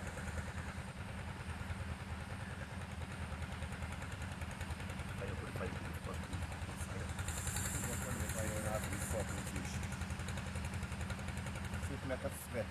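A steady low engine-like drone running throughout, with faint voices murmuring briefly about five and eight and a half seconds in and a short high hiss near the middle.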